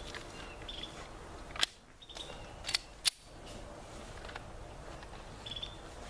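Three sharp pistol shots from elsewhere on the range: one about a second and a half in, then two close together about a second later. Short, high bird chirps sound over the open-air background.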